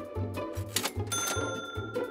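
Background music with a steady beat, and a cash-register "ka-ching" sound effect about a second in, its bell ringing on for most of a second.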